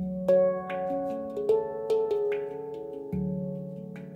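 Ayasa F#3 Low Pygmy 21 handpan played by hand: a deep bass note struck at the start and again about three seconds in, with a melody of higher ringing notes tapped in between, each note ringing on and overlapping the next.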